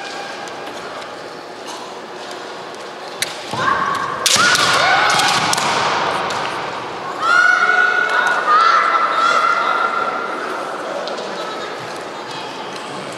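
Women kendo fighters giving long, high-pitched kiai shouts, with sharp cracks of bamboo shinai and a stamp on the wooden floor as they strike. The first crack comes about three seconds in, a heavier impact follows at about four seconds, and the shouts rise again twice near the middle.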